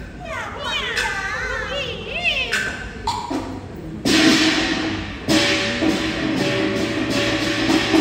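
Hainanese opera: a performer's stylized sung declamation with wavering, gliding pitch, then about four seconds in the accompanying band enters with a loud percussion crash and goes on into sustained instrumental music.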